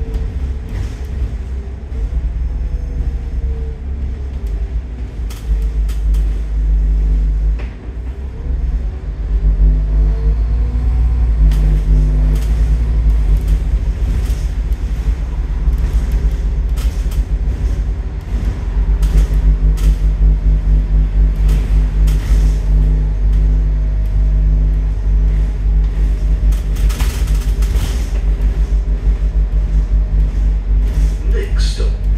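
Scania N230UD double-decker bus's five-cylinder diesel engine running under way, heard from the top deck as a heavy low drone. A transmission whine rises and falls with road speed, and body panels rattle. The drive dips briefly about eight seconds in, then pulls louder again.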